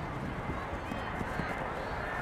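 Distant shouts and calls of players and spectators across an outdoor soccer field, faint over a steady low rumble.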